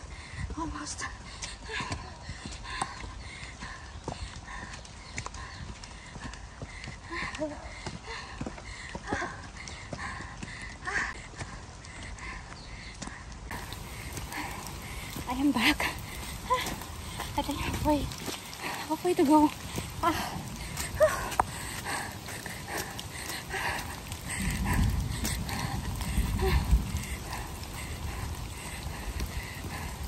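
Footsteps of trail runners climbing stone steps on a forest trail: a steady run of short footfalls. A low rumble on the microphone about five seconds before the end.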